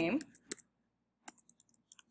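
A few keystrokes on a computer keyboard as a word is finished and Enter is pressed for a new line: two clicks about half a second in, another a little after one second, then faint ticks.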